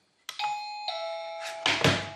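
SilverCrest battery-free wireless doorbell's plug-in chime units playing a falling two-note ding-dong, just after a click. A loud thump of handling comes near the end as the chime rings on.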